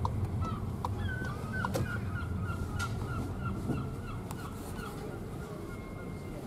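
A gull giving a long run of short, repeated cries, about three a second, from about a second in until near the end, heard from inside a car over the low rumble of its engine and road noise.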